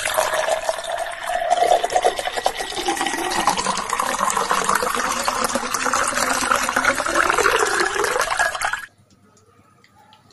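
Water pouring in a steady stream into a glass, splashing as it fills. It cuts off suddenly about nine seconds in.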